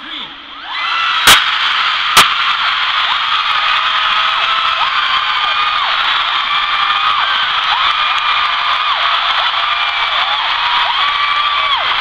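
A large concert crowd screaming on cue after a "one, two, three" count. Many high-pitched voices overlap in a loud, steady din that starts suddenly just under a second in. Two sharp bangs about a second apart stand out near the start.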